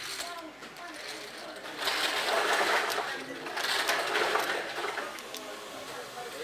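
Plastic casino chips clattering as a pile of chips is gathered and sorted by hand, in two busy rattling bursts about two and four seconds in.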